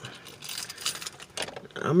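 A few light clicks and a faint rustle, jingly like small metal objects being handled.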